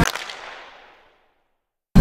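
A sharp, whip-like swish of a transition sound effect that dies away over about a second.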